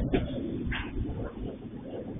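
Train wagons rolling past: a steady low rumble with a couple of short, sharper clacks.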